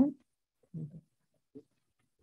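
The end of a spoken word, then a short, faint voice sound less than a second in and a tiny blip after it, with near silence between.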